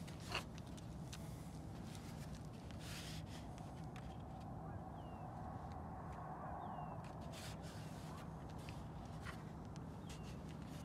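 Handling of a 3D-printed plastic model airplane: one sharp click about a third of a second in, then scattered soft clicks and rustles over a steady low outdoor rumble. Two faint short falling chirps come in the middle.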